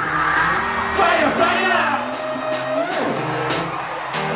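Live hip-hop music played loud through an arena sound system, with a regular drum beat and a voice over it, as picked up by a handheld recording in the crowd.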